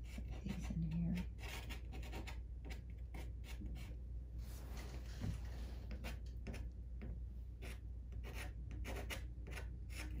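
Soft pastel stick scratching and rubbing across paper in an irregular run of short, dry strokes.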